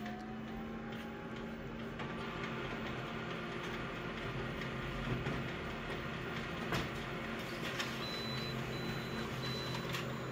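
Office multifunction copier running a full-colour copy job: a steady mechanical hum with a low tone that starts as the job begins, and several clicks and knocks from the machine as it works.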